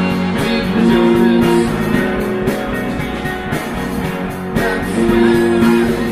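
Live rock band playing, with guitar over drums and two long held notes, one about a second in and one near the end.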